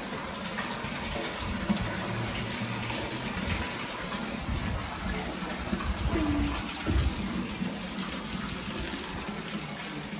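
Steady rush of a strong draught of air through the tunnel passage, with wind buffeting the microphone in irregular low rumbles.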